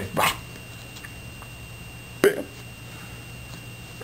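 A man's short laugh, then a second short, sharp vocal burst about two seconds in, over a steady room hum.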